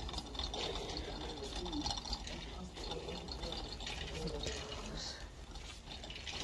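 A metal shopping cart rolling along a store aisle, its wheels giving a low rumble and irregular light rattles, with a faint voice in the background.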